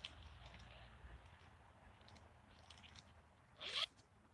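Faint rustling at a backpack, then one quick pull of the backpack's zipper near the end, a short rising zip.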